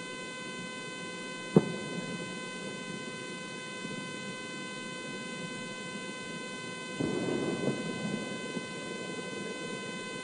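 Steady outdoor background hiss with a faint electrical hum of several thin steady tones. There is a single sharp click about one and a half seconds in, and a brief rise of rustling noise around seven seconds.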